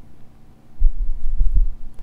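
A cluster of low, dull thumps about a second in, over a faint steady hum.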